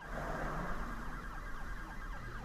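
Street traffic noise, with an emergency-vehicle siren sounding a rapid series of quick falling tones over it.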